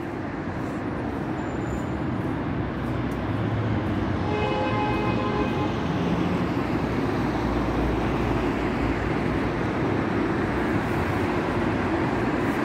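Road traffic on a wide multi-lane city avenue: a steady rush of tyre and engine noise that swells over the first few seconds and then holds. About four seconds in there is a brief whine with several tones.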